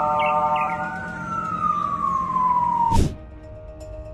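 A single siren-like tone that rises briefly, then falls slowly for about two seconds over steady background tones, cut off by a sharp swoosh about three seconds in.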